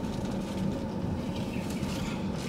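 Steady low road and engine noise inside a moving car's cabin.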